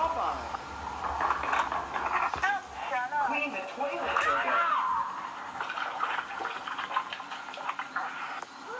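Overlapping voices from two video soundtracks played at once through small tablet speakers, their pitch swooping up and down, the words unclear.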